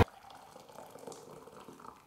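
Hot, boiled-down vinegar and baking soda solution being poured from a steel pot into a glass measuring jug: a faint, steady liquid trickle.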